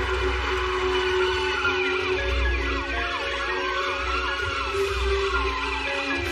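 Several sirens wailing at once, their pitches sliding up and down and crossing each other, over film score music with steady held notes and a low bass.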